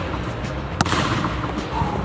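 A basketball bounced once on the court floor before a shot: a single sharp thud a little under a second in.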